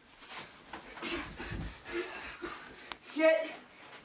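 A short scuffle between people on a carpeted floor: irregular shuffling and rustling, with a dull thud about halfway through as one of them goes down.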